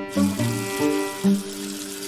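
Water running from a bathroom tap into a sink, a steady hiss, under background music of bowed strings.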